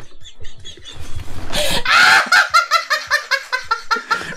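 Hearty human laughter: a breathy burst about halfway in that breaks into rapid, rhythmic ha-ha pulses.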